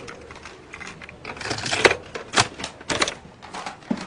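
Clear plastic cassette tape cases clicking and clacking against each other as hands sort through a stack of tapes, in an irregular run of sharp clicks with a scraping shuffle about a second and a half in.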